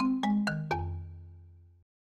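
Short intro music jingle: a quick run of four bright plucked notes over a bass note, the last notes ringing on and fading away to silence.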